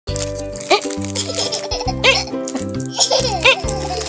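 Background music with a repeating bass line, and a small child giggling over it in about four short bursts.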